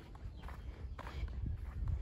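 Faint footsteps of a person walking across a grass lawn, a few soft steps over a low rumble.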